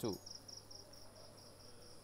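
Quiet background sound: a steady high-pitched chirping made of rapid, even pulses, over a faint low hum.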